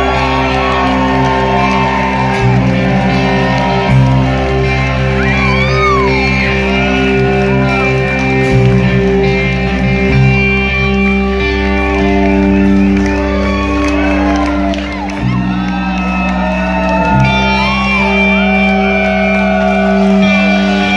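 Live rock band playing sustained electric guitar chords over bass and drums, the chords changing every few seconds, with the crowd shouting and whooping over the music in a large hall.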